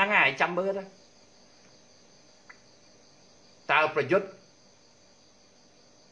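A man talking in two short bursts, one at the start and one about four seconds in, with long pauses between. A faint, steady high-pitched whine runs underneath throughout and is heard plainly in the pauses.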